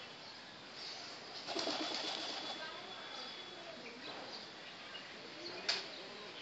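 A pigeon's wings flapping in a short rustling burst as it takes off, about a second and a half in. A sharp click comes near the end.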